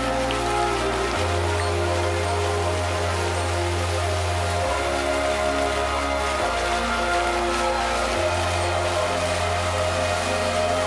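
Show music with long sustained bass notes that change every couple of seconds, over the steady hiss of fountain jets spraying water.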